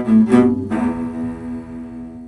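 Cello playing the last notes of a goal-horn melody: two short bowed notes, then a final long note that fades away.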